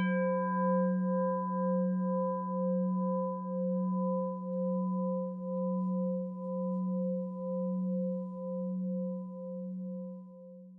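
A singing bowl struck once, ringing in a long, slowly fading tone built of several pitches, with a steady wavering pulse about twice a second.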